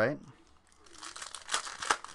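A trading card pack wrapper crinkling and tearing as it is opened by hand, starting a little under a second in, with a couple of sharper crackles near the end.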